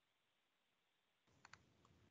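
Near silence, with two or three faint clicks near the end.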